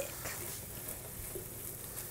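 Ground beef with garlic sizzling faintly in a frying pan on a gas stove while it is stirred with a wooden spoon.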